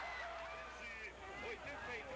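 Faint man's voice speaking: a drawn-out word at first, then quicker talk.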